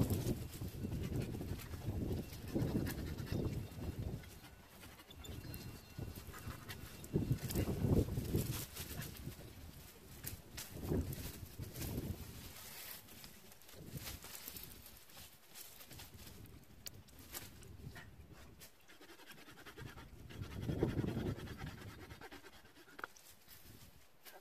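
Gusts of wind buffeting the microphone in uneven low rumbling surges, with scattered faint clicks and rustles from work at a pruned plum tree.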